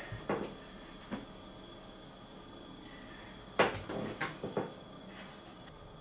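A plastic enclosure lid being handled and taken off, with a few light clicks and then a sharper clatter of plastic knocks about three and a half seconds in, as a small dish is put into the tank.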